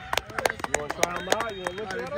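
Voices talking in the background, with scattered sharp clicks and taps throughout.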